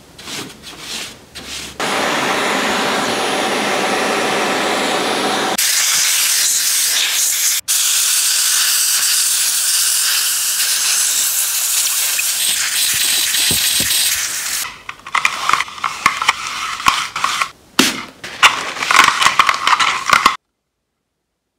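Compressed air from a blow gun hissing loudly and steadily as it blows dust out of a computer power supply, from about two seconds in to about fourteen, with one brief cut partway. Before it come brush strokes on the perforated metal case, and after it a cloth rubbing on a metal panel.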